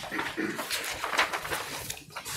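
Paper rustling and pages being turned, with small clicks and knocks scattered through it and a brief faint voice about half a second in.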